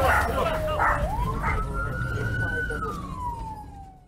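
Police siren wailing: one slow cycle that falls, rises and falls again, fading out near the end, with a few short bursts of sound over it in the first two seconds and a low rumble beneath.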